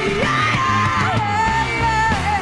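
A hard funk-rock band recording from the early 1970s, with electric guitar, bass, keyboards and drums playing loudly. About a second in, a high melody line starts, held and bending in pitch.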